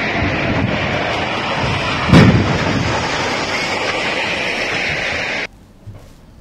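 A concrete span of a cable-stayed bridge collapsing into a river: a continuous loud rumble of falling structure, with a heavier crash about two seconds in. The sound cuts off suddenly near the end.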